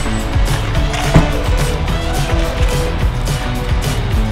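Background music with a steady beat over a bass line.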